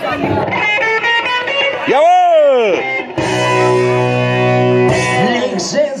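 Electric guitar opening a song: a quick run of picked notes, a note sliding up and back down, then a held chord over a steady bass note.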